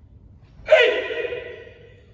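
A karate kiai: one sharp, loud shout about two-thirds of a second in, ringing on briefly in the hall's echo as it fades.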